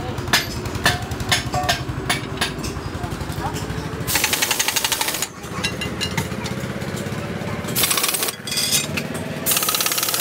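Pneumatic impact wrench hammering on the shaft nut of a gear in a truck differential housing, in three bursts: about four seconds in for roughly a second, briefly near eight seconds, and again just before the end, with lighter knocks in between.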